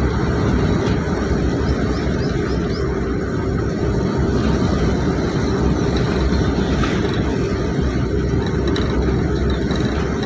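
Steady, loud engine and road noise of a moving vehicle, heard from inside its cabin, strongest in the low end and without a break.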